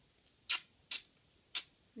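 Plastic deco tape being pulled off its roll in short tugs, each giving a sharp rip: a faint one, then three loud ones about half a second apart. The noise comes from the tape being plastic rather than paper washi tape.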